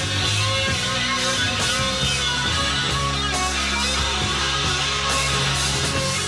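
Live 1970s rock band recording: electric guitar over sustained bass and drums, played back at a steady level.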